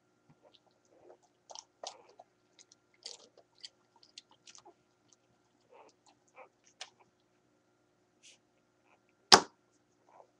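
Scattered short wet smacks and clicks of newborn Catahoula leopard dog puppies suckling at their mother, with one loud knock about nine seconds in.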